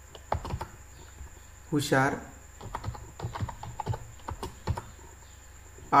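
Typing on a computer keyboard: uneven runs of quick key clicks as words are typed in.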